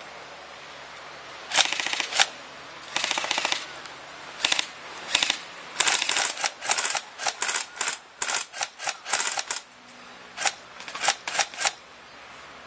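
Airsoft electric guns (AEGs) firing full-auto: many short bursts of rapid clicking shots with brief gaps between, starting about a second and a half in.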